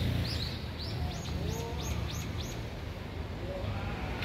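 A small songbird calling a run of about eight quick high notes, each sliding down in pitch, over the first two and a half seconds, with a low rumble on the microphone underneath.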